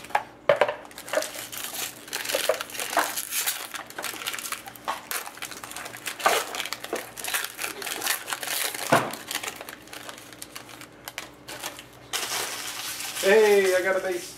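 Foil-lined wrapper of a hockey card pack being torn open and crinkled by hand, an irregular crackling with sharp little snaps as the cards are pulled out.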